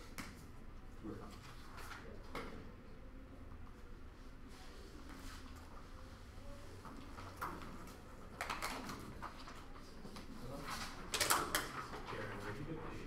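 Quiet classroom with scattered faint clicks. Near the end come bursts of paper rustling and knocks from a chair and desk as someone stands up and handles sheets of paper, the loudest a little before the end.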